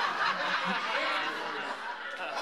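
Audience laughing at a stand-up comedian's punchline, the laughter slowly dying down.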